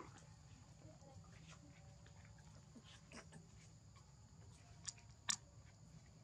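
Near silence: a faint steady low background hum with a few soft clicks, one short sharp click about five seconds in.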